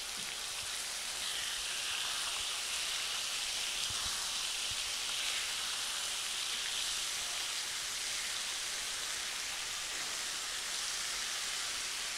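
Veal saltimbocca (floured veal topped with prosciutto and sage) sizzling steadily in hot butter in a non-stick frying pan as the slices are turned over with tongs.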